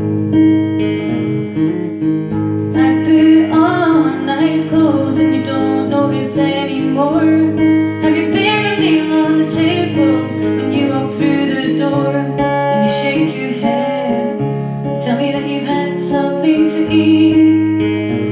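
A woman singing live to her own acoustic guitar. The guitar plays throughout, and her voice comes in about three seconds in, drops out briefly, and returns near the end.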